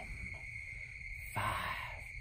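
Steady, high-pitched chorus of night insects such as crickets, with a single breathy spoken word about one and a half seconds in.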